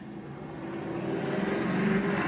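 Paper folding machine's motor running with a steady hum that grows louder.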